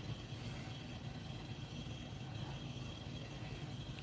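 Faint steady low hum of room background noise, with no distinct events.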